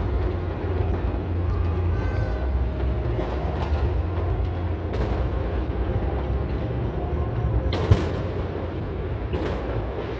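Fireworks going off across the city: a steady rumble of many distant bursts with crackling, broken by a few sharper bangs, the loudest a little before the end.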